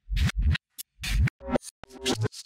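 Choppy electronic glitch sound effect: a string of short, stuttering hits, about six or seven in two seconds, with brief silences between them, like a record being scratched.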